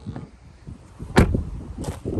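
A car's rear passenger door being shut with one loud thud about a second in, followed by a smaller click near the end.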